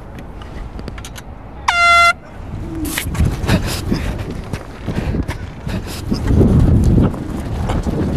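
A short, steady air-horn blast about two seconds in, sounding the start of the timed flight. It is followed by a rough rumbling and clattering noise that grows louder toward the end.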